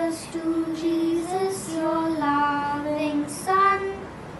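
A child singing a slow melody of long held notes that step up and down in pitch, the highest and loudest note near the end.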